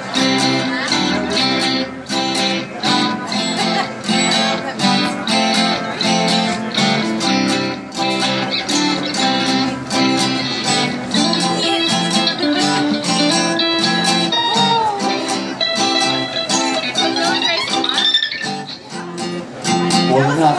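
Live acoustic band playing an instrumental passage, with guitars strummed in a steady rhythm.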